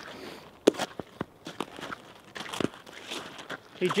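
Boot footsteps on a thin, soft layer of snow over ice: a few irregular sharp crunches, the loudest less than a second in.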